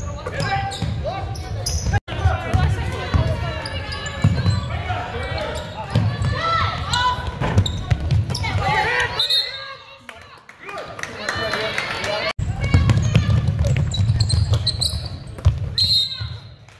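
Live basketball game in a gymnasium: indistinct calls from players and spectators over a ball bouncing on the hardwood court, in a large echoing hall. The sound drops out sharply about two seconds in and again about twelve seconds in, where highlight clips are spliced together.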